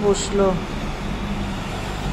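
Steady hum of city road traffic heard from above, cars and motorbikes passing on the street below.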